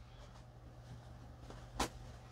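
Quiet room with a steady low hum, and a single short knock about two seconds in.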